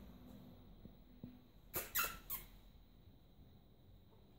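Pit bull puppy giving a quick run of three short, high squeaky yips in play, about two seconds in, the middle one loudest and falling in pitch.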